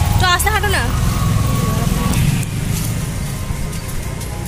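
Street noise: a steady low rumble, with a short stretch of a person's voice in the first second.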